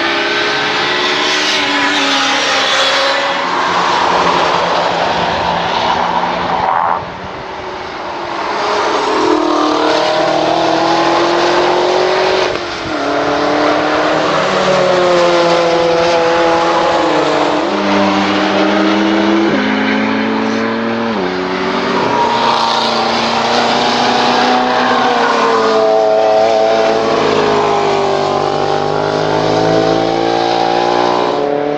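Chevrolet Corvette V8 engines revving hard through corners in several passes one after another, the pitch climbing and then dropping sharply at each upshift. There is a sudden break about seven seconds in.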